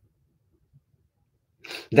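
Near silence for about a second and a half, then a short, sharp burst of breath from a man just before his speech resumes at the very end.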